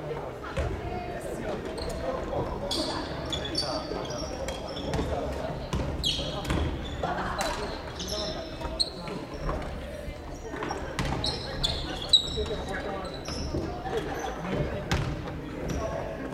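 Badminton rackets striking shuttlecocks in irregular sharp clicks, with short high squeaks of court shoes on a wooden gym floor, echoing in a large hall over a murmur of players' voices.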